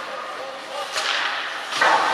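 Sharp cracks of ice hockey play, as stick and puck strike on the ice: one about a second in and a louder, deeper one near the end, over the arena's hollow background noise.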